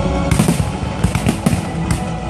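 Aerial fireworks shells bursting in a rapid string of bangs, several a second, over music played with the display.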